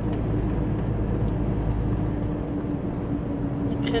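Scania 113 truck's diesel engine running on the highway, heard from inside the cab as a steady drone with a low hum and road noise; the deepest rumble eases slightly a little past halfway.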